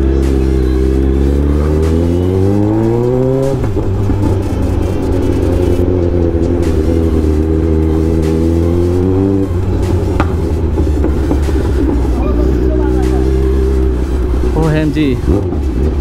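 Kawasaki Z900's inline-four engine and loud exhaust at low speed in traffic. The revs climb steadily for about three and a half seconds, break off, then hold with small rises and falls of the throttle.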